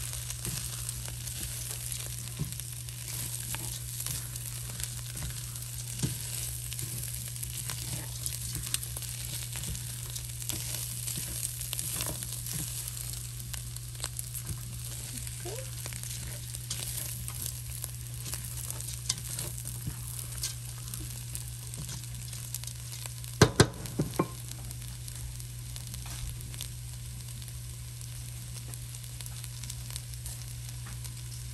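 Rice, smoked sausage and peppers sizzling as they fry in a stainless steel pot, with a spatula stirring and scraping through them: the dry rice being toasted in the fat before the broth goes in. A steady low hum runs underneath, and a few sharp knocks of the spatula against the pot come about three-quarters of the way through.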